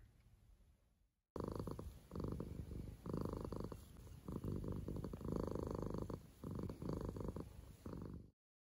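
A cat purring close to the microphone, starting about a second in after a brief silence, in repeated waves about a second long with short pauses between breaths.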